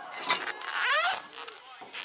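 Shouting voices of people at a soccer match, with one loud rising shout just under a second in. A sharp knock sounds just before it.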